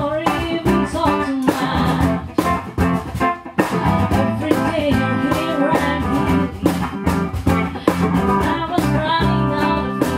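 A small band playing a song: a woman singing over electric guitar and bass guitar, with a steady beat.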